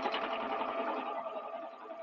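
Juki air-threading serger running at speed, stitching fabric with a fast, even rhythm that fades near the end as the fabric runs off past the thread-cutter sensor.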